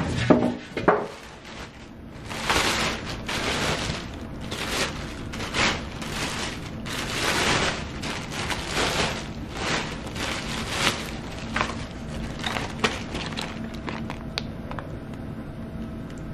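Plastic liner bags rustling and crinkling in irregular bursts as they are pulled open and handled, with a few sharp clicks near the end.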